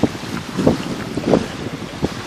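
Wind buffeting the microphone over small sea waves washing onto a sandy shore, with a few louder gusts.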